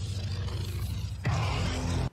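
Animated episode's soundtrack: music over a low rumble, swelling suddenly a little past a second in.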